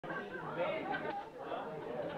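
Indistinct chatter of several voices.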